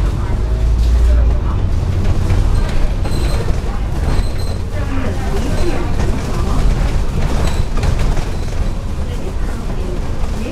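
Double-decker bus heard from on board while driving: a steady low engine and road rumble, with voices talking in the background. Two faint short high beeps come about three and four seconds in.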